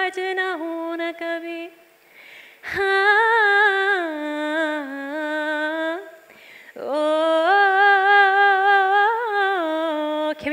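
A woman singing solo without accompaniment, in three long held phrases whose pitch bends and wavers, with short breaths at about two and about six and a half seconds in.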